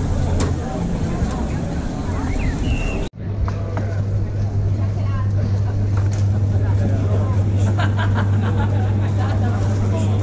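Busy street-food stall ambience: background voices and general bustle. About three seconds in the sound cuts out for an instant, then a steady low mechanical hum takes over, with a few light clicks of a knife slicing meat on a cutting board.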